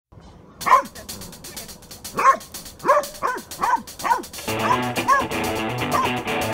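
A Belgian Malinois barking repeatedly while its handler holds it back, short sharp barks at roughly one to two a second, bunching closer together in the middle.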